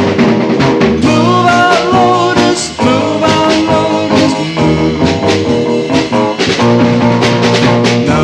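A mid-1960s garage-band surf and hot-rod rock record playing: a loud, steady band sound with a driving drum beat and electric guitars.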